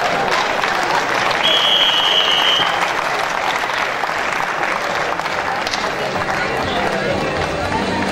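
Spectators applauding steadily in a sports hall, with a single long, high whistle blast about one and a half seconds in.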